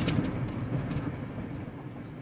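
Car cabin noise while driving: a steady low rumble of road and engine noise that eases off gradually, with a few faint clicks.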